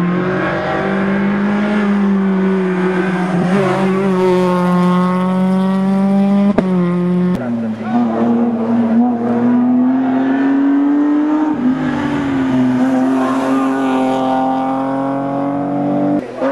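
Rally car engines held at high revs as they pass through a bend: first a Renault Mégane coupé, then, after an abrupt cut about seven seconds in, a BMW 3 Series coupé. The engine note stays steady with only slight rises and falls in pitch.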